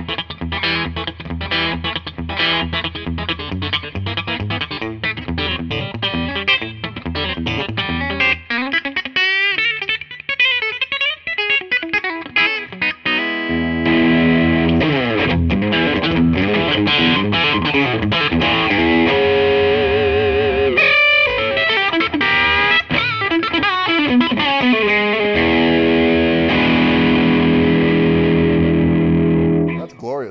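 Koll Troubadour II electric guitar played on its TV Jones Classic bridge pickup through an amplifier: quick picked single-note runs, then bent notes with vibrato about nine seconds in, then louder sustained chords and held notes from about fourteen seconds in.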